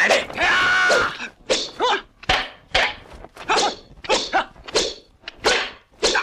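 Martial-arts fight shouts: one long yell, then a run of short, sharp shouts and grunts about twice a second. A couple of sharp strike sounds come in between.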